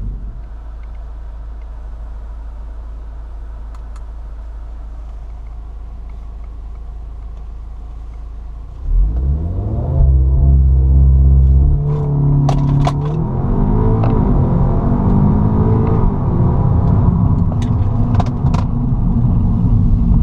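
Audi S3 Sportback's turbocharged 2.0-litre four-cylinder (ABT stage 1 tune), heard from inside the cabin: it idles steadily at a standstill, then about nine seconds in the revs jump and are held high against the brake for launch control. After that it pulls hard through the gears, rising in pitch, with short sharp exhaust cracks ('farting') at the upshifts.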